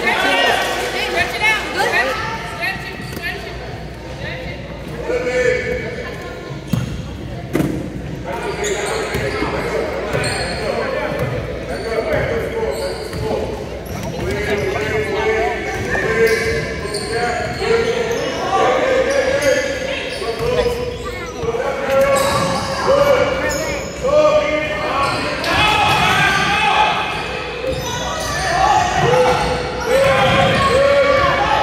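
Basketball game sound in a large gym hall: a ball bouncing on the hardwood floor, with voices calling out from players and spectators throughout, the sound echoing in the hall.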